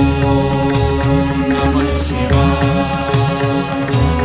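Hindu devotional hymn music for Lord Shiva, with mantra-style chanting over sustained instrumental drones and a pulsing low bass.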